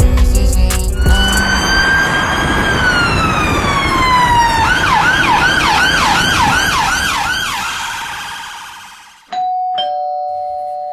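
Ambulance siren: a slow wail gliding down in pitch, then a fast yelp of about three sweeps a second, fading away. Near the end a held, steady two-note electronic tone begins.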